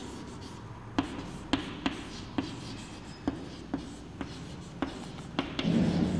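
Chalk writing on a blackboard: a string of about nine short, sharp taps and scratches, irregularly spaced, as letters are written.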